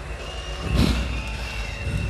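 Lull between songs at a live metal show: a steady low rumble of crowd and stage PA, with a thin, steady high tone through most of it and a short burst of crowd noise a little under a second in.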